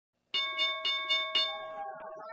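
A bell struck five times in quick succession, about four strikes a second, each ringing on and fading after the last strike.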